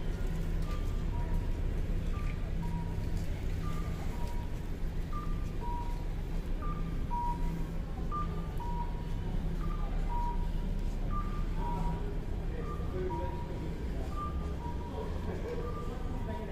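Japanese accessible pedestrian-crossing signal sounding its electronic two-note cuckoo-style chime while the walk light is green: a short higher note, then a longer lower note, repeating about every one and a half seconds. A steady low rumble of street traffic runs underneath.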